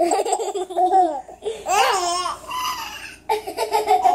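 A baby and a toddler laughing together in loud, giggly bursts, with a high squealing laugh about two seconds in.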